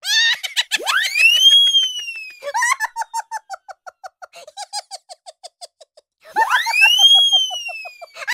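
A person laughing in quick giggling bursts. Twice, about half a second in and again near the end, a high whistle-like sound shoots up in pitch and then slowly falls away.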